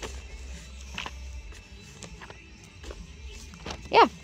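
Pages of an old, brittle magazine being handled and turned, a few short soft paper rustles with the loudest just before the end. Faint background music and a low steady hum run beneath.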